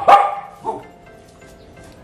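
White spitz-type dog barking: one loud bark at the very start and a shorter, weaker one just after, then quiet.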